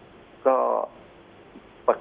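Speech only: a man's voice heard through a telephone line says one short drawn-out word about half a second in, then a pause.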